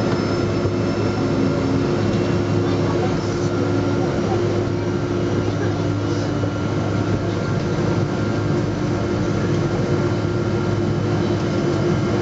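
Steady cabin noise of a Boeing 777 with GE90 engines taxiing at idle after landing: an even low hum with a few steady held tones above it.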